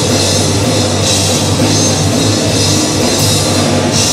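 Rock band playing loud and steady, with electric guitars and a drum kit, and cymbal crashes about every two seconds.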